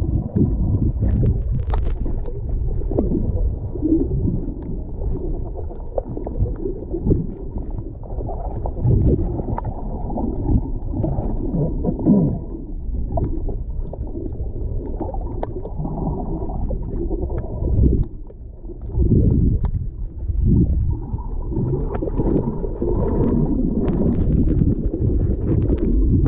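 Muffled underwater noise from a camera held under the sea: a low, churning rumble of moving water with small clicks and crackles. There is a short lull about two-thirds of the way through.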